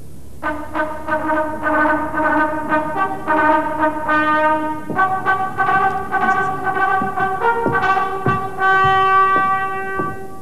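A solo brass instrument with a wide bell, played live: a slow melody of held notes that starts about half a second in and ends on a long held note near the end.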